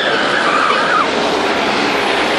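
A car passing on the street: a steady rush of tyre and engine noise, with a high tone sliding down in pitch that stops about a second in.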